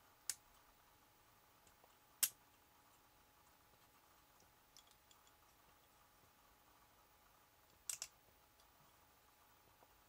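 Small toy-robot figure's plastic and metal parts clicking as they are worked by hand during a transformation. There are a few sharp clicks: one just after the start, the loudest about two seconds in, faint ticks around five seconds and a quick double click about eight seconds in, with near silence between.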